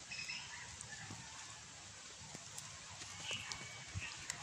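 Quiet outdoor background hiss with a few faint short high chirps, one just after the start and one near the end, and small clicks of handling.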